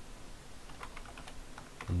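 Computer keyboard being typed on: a run of soft, separate key clicks at an uneven pace.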